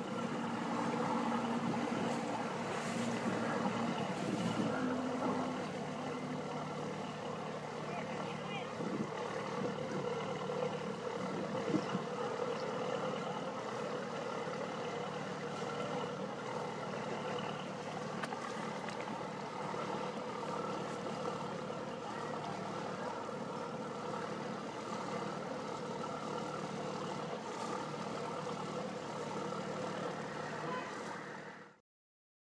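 Diesel engine of a river hire cruiser running steadily at low speed, a constant low hum, as the boat moves past close by.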